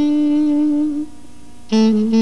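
Jazz tenor saxophone holding one long note for about a second, then, after a brief quieter gap, coming in on a new, lower held note near the end, with the band faint underneath.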